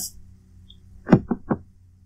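Three quick knocks or taps about a fifth of a second apart, the first the loudest, over a faint steady hum.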